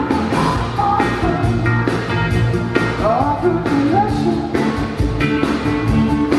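Live rock band playing with a lead singer: a sung melody over drums, electric guitar and keyboards, with a steady drum beat throughout.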